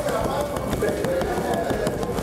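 Loose sugar sliding and pouring off a tilted metal baking tray of sugar-coated campechana dough into a bin, while the back of the tray is tapped to knock the excess off. It makes a steady, dense rustle of many small ticks.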